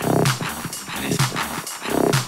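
Live electronic dance music played on Roland AIRA hardware. It is a steady machine beat with quick, regular hi-hat ticks over a deep, pulsing synth bass.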